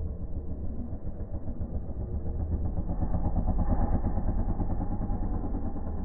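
Freestyle motocross dirt bike engine running as the rider speeds toward the jump ramp, growing louder about three seconds in and easing off near the end as the bike takes off.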